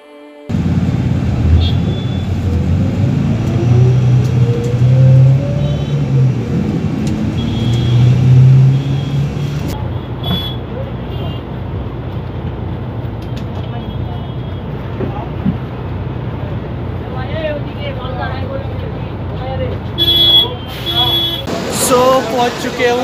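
City bus engine and road noise heard from inside the bus, the engine pitch rising twice as the bus accelerates. Short high beeps sound now and then, with a louder beeping near the end.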